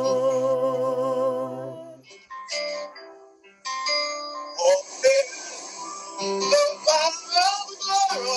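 Praise-and-worship singing with keyboard accompaniment. A held, wavering note breaks off about two seconds in, the sound dips briefly, and the song picks up again just before halfway.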